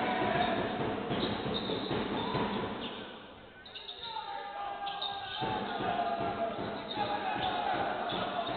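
A basketball being dribbled on a hardwood court in an indoor hall, with players' voices calling out over it. The sound dips briefly about halfway through, then picks up again.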